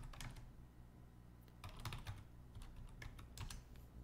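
Faint computer keyboard keystrokes typing a short command: a few clicks, a pause of about a second, then a longer run of clicks.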